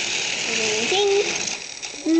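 Battery-powered toy Thomas the Tank Engine train running on plastic track, its small geared motor whirring and clicking; the rattle fades out a little past halfway.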